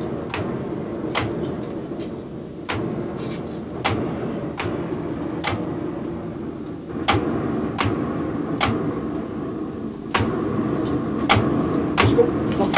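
Raku kiln fire burning under a forced draught from hand-worked bellows: a steady rush of air and flame with sharp clacks, roughly one a second, from the bellows strokes. The sound of this draught is what the firing crew listen to in order to judge the kiln's condition.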